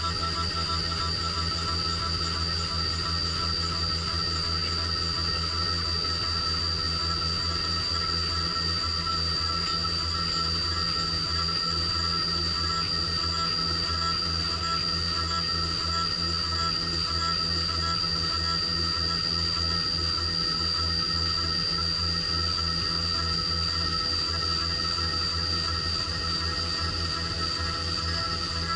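Haas Super Mini Mill 2 CNC milling machine cutting aluminium under flood coolant: a steady high-pitched whine over a low hum, unchanging in pitch and level.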